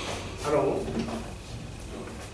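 A man's short vocal sound about half a second in, then a faint click about a second in.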